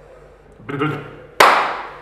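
A single sharp hand clap about one and a half seconds in, ringing briefly in the workshop, just after a short wordless vocal sound from a man.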